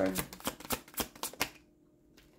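A tarot deck being shuffled by hand: a quick run of sharp card snaps, about six a second, that stops about a second and a half in.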